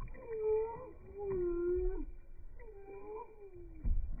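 Buff ducklings peeping, their calls slowed by slow-motion playback into about four long, low calls that bend in pitch and partly overlap. A low thump comes just before the end.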